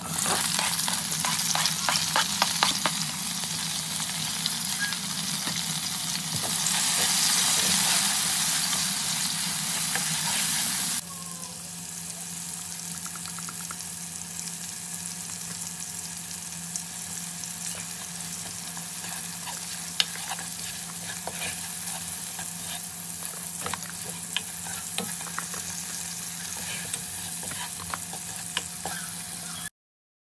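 Chopped tomatoes tipped into hot oil in a nonstick wok, sizzling loudly while a spatula stirs with many small clicks and scrapes. A little past ten seconds in the sound drops abruptly to a quieter, steady sizzle with occasional spatula clicks, and it cuts off just before the end.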